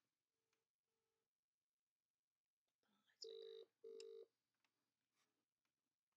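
WhatsApp outgoing-call ringback tone playing quietly through a phone's loudspeaker while the call connects. It comes as a faint double ring near the start, then a clearer double ring about three seconds in, with near silence between.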